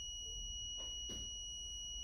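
NV PRO3 soft-tissue diode laser's activation beep: one steady, unbroken high-pitched tone, the audible warning that the laser is firing.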